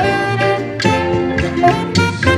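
Saxophone playing a jazzy melody of held notes over a backing track with a walking bass line and drums.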